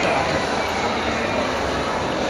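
Sports hall ambience: a steady, even rumble of the large room with background chatter of onlookers, with no distinct strikes or shouts.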